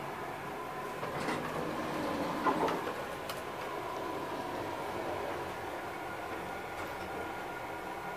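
Elevator car doors of a 1989 Toshiba traction lift sliding, with a few sharp clicks and knocks between about one and three and a half seconds in, over a steady mechanical hum.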